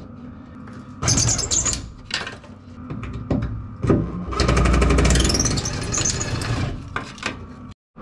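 Metal tool working at a door-bracket bolt: scattered clanks and scrapes, then from about four seconds in a run of rapid, even clicking lasting between two and three seconds.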